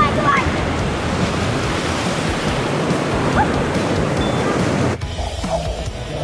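River water rushing and splashing close to the microphone, with a brief child's squeal near the start and another about three seconds in. About five seconds in the water noise cuts off suddenly and gives way to background music.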